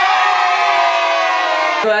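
A small group of young people cheering, one long shouted "yeah" that slowly falls in pitch and stops shortly before the end.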